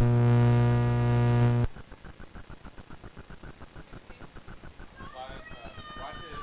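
A horn sounds one steady, loud blast of under two seconds and cuts off sharply. Faint, fast, regular ticking follows, and a distant voice comes in near the end.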